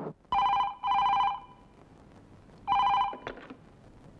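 Telephone ringing with a double ring, then a third ring cut short by a click as the handset is picked up.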